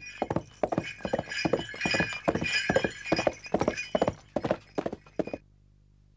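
A horse galloping, a fast run of hoofbeats with a higher-pitched sound over them, cutting off suddenly about five seconds in.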